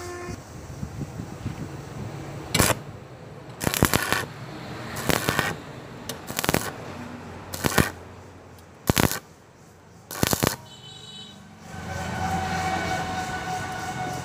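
Stick welding arc on thin square steel tubing, struck in about seven short crackling bursts, each under a second and cut off abruptly. This is the on-off stitch technique used to weld thin metal with a stick welder.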